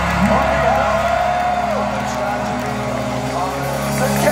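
A live punk band's amplified guitars and bass through the PA, holding a steady ringing chord. A voice hollers one long note over it that bends down and drops away about two seconds in.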